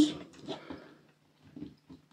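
A woman's voice trailing off at the end of a sentence, then a near-quiet pause broken only by two faint, short soft sounds, about half a second and a second and a half in.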